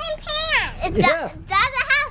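Young children's high-pitched voices, chattering with wide sweeps up and down in pitch.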